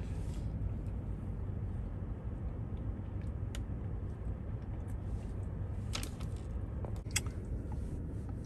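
Steady low rumble of a car's cabin, with a few faint clicks scattered through it.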